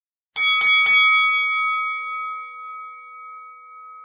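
A boxing ring bell struck three times in quick succession, then ringing on with a slowly fading tone.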